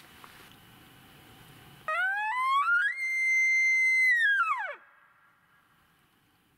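Cartoon-style sound effect: a whistle-like tone starts about two seconds in, climbs in quick steps, holds a high note for over a second, then drops away steeply. It goes with a meter needle swinging into the danger zone.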